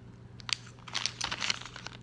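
Plastic packaging of soft-plastic fishing grubs crinkling and crackling as it is handled close to the microphone, a quick run of crackles starting about half a second in.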